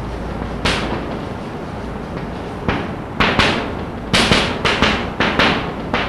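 Chalk tapping and scraping against a blackboard as words are written, a series of short sharp strokes: a couple of single ones at first, then quicker clusters in the second half.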